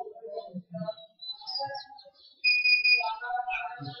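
Quiet voices in a room, and about two and a half seconds in a high steady tone held for about half a second.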